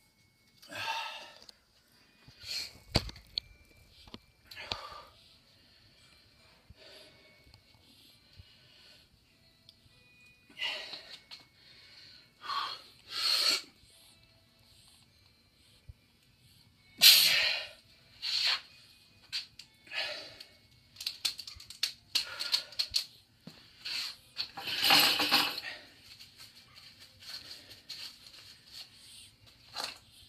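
A man forcing out sharp, noisy breaths in irregular bursts as he strains to bend a quarter-inch Grade 8 bolt by hand. There is a low thump about three seconds in, and the loudest breaths come a little past halfway and again near the end.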